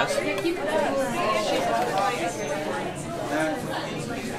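Background chatter: several people talking at once in a large room.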